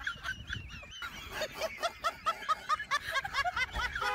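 Rapid, high-pitched laughter: a fast run of short, honk-like 'ha' syllables, about five a second.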